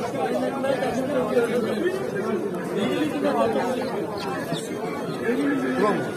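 Background chatter of several people talking at once at a busy market, with no single voice close by.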